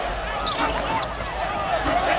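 A basketball bouncing on a hardwood court during live play, with short knocks over steady arena background noise.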